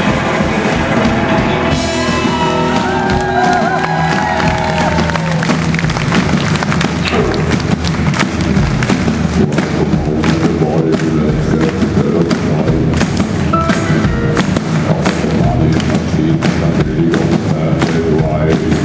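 Live rock and roll band playing amplified through a PA: electric guitar, bass and drums with a steady driving beat. Gliding, bending guitar lines about two to five seconds in.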